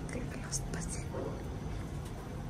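Soft whispered speech over a steady low hum inside a lift car.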